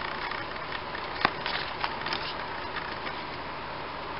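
Soft handling of a stack of Pokémon trading cards: faint sliding and rustling, with a few light clicks as cards are moved in the hand, over a steady background hiss.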